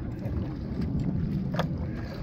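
Low wind rumble on the microphone out on open water, with one short click about one and a half seconds in.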